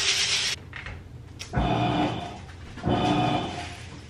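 Downy scent-booster beads pouring into a washing machine, ending about half a second in. Then a click and a low thud, and a steady machine hum that comes in short bursts with pauses, typical of a washer motor starting to turn the drum.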